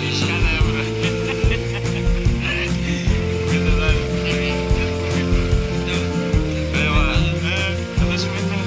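Background music with a steady drum beat.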